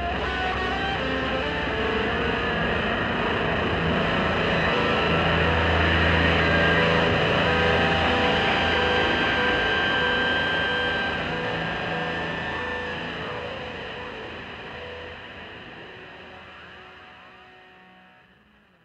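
Hard rock track with distorted electric guitar, holding full for the first half and then fading out steadily over the last eight seconds.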